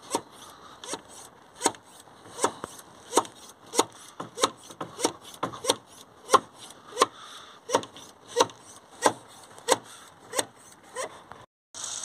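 Hand pump of a pressurised cleaning-fluid dispenser being worked up and down, a short rubbing stroke about every two-thirds of a second, some sixteen in all, stopping shortly before the end. The pumping pressurises the dispenser to force DPF cleaner through the pressure-sensor pipe into the diesel particulate filter.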